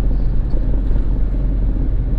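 Steady engine drone and road rumble heard from inside the cabin of a moving minibus.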